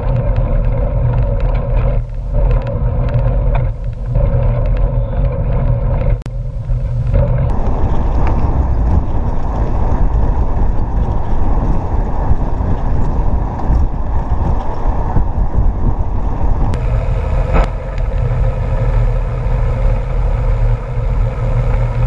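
Wind rushing over the microphone of an action camera on a moving mountain bike, mixed with the bike's tyres rolling on asphalt: a loud, steady low rumble with a faint hum over it that fades about seven seconds in and comes back near the end.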